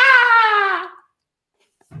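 A man's loud, open-mouthed howl of laughter: one long high cry that falls steadily in pitch over about a second.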